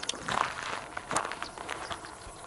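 Footsteps with rustling, a few soft scuffs spread across the two seconds, as someone walks on the ground around the light sheet.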